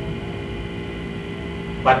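Steady electrical hum made of several constant tones, with a man's voice saying one short word near the end.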